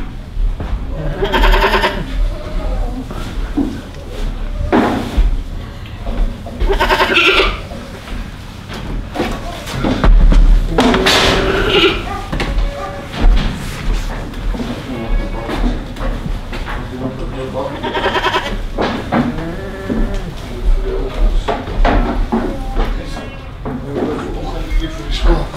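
Boer goats bleating: several separate wavering calls, the longest and loudest about eleven seconds in.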